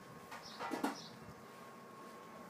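Birds calling: short, high chirps about once a second, and a louder, lower sound about three-quarters of a second in.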